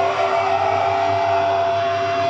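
Live melodic death metal band playing loudly, with distorted electric guitars holding sustained notes over a dense, noisy wash of sound.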